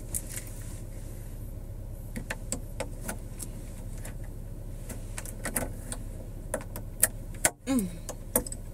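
Scattered small plastic clicks and rattles of a camera holder being fitted up at a car's sunroof, over a steady low hum in the car cabin. Two sharper clicks come shortly before the end.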